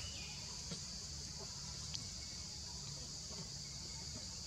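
Steady high-pitched drone of an insect chorus, with a couple of faint clicks.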